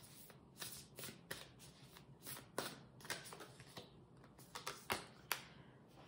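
A deck of tarot cards being shuffled hand over hand: a quiet, irregular run of short flicks and slaps as packets of cards are dropped onto one another, a few each second.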